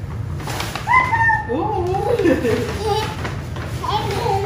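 A young child's high-pitched voice without clear words: a squeal about a second in, rising and then held, followed by wavering, sing-song vocalizing. A steady low hum runs underneath.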